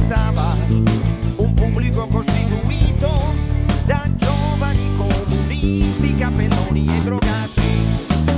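Six-string electric bass playing a busy bass line along with a full band recording: low notes throughout, regular drum strokes, and a melody line that wavers in pitch above.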